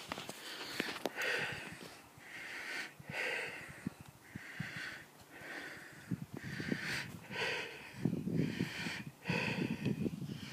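Heavy breathing of a person walking uphill, about one breath a second, with footsteps crunching on dry leaf litter and twigs.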